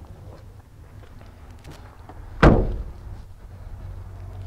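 A Chevrolet HHR's side door shut once about two and a half seconds in: a single thud that rings briefly.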